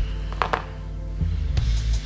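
Background music with a steady low bass line, and two short clicks about half a second in.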